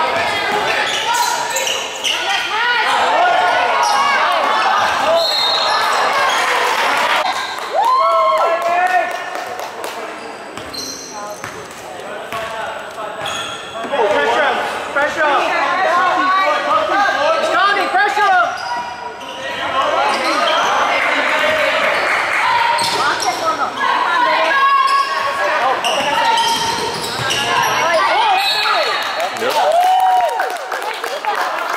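Basketball game in a gymnasium: a ball bouncing on the hardwood floor amid players and spectators shouting and calling out, echoing in the large hall.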